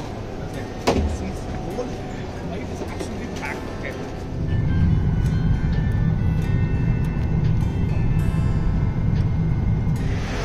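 Busy airport terminal ambience with a sharp knock about a second in, then a cut to a passenger jet cabin where a louder, steady low rumble of the aircraft takes over for the rest.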